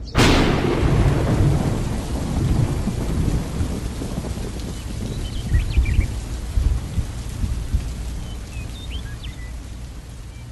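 A sharp thunderclap right at the start, rolling away over a couple of seconds into steady rain with low rumbling. A few faint bird chirps come through around the middle and near the end.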